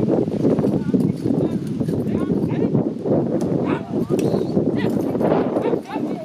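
A pair of driving ponies' hooves beating on turf and a marathon carriage's wheels rattling as it is driven at speed through the obstacle, a dense steady clatter, with voices calling over it.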